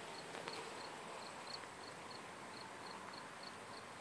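A cricket chirping faintly and evenly, about three short high chirps a second, over a quiet outdoor hush.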